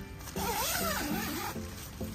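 Tent door zipper pulled along its track for about a second, a rasping run that wavers up and down in pitch, over background music.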